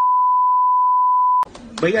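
Broadcast test tone played with television colour bars: one steady, pure beep that cuts off suddenly about one and a half seconds in.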